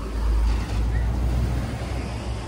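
Low, steady rumble of road traffic, with no clear single event standing out.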